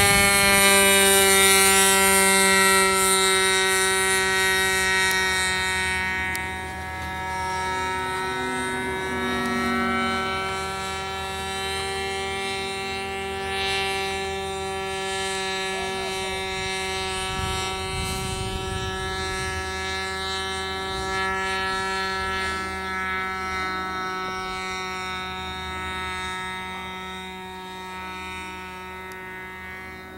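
Radio-controlled model aeroplane's motor and propeller running at a steady, droning pitch in flight. It is loudest in the first few seconds, then fades gradually as the plane flies farther off.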